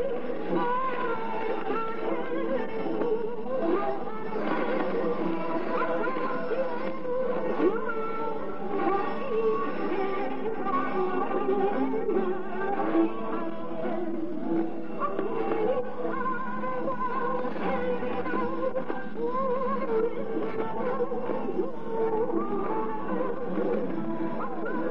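Music heard through a shortwave radio broadcast, thin and muffled with the treble cut off, playing steadily throughout.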